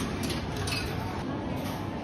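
Arcade background din with a few light clicks in the first second.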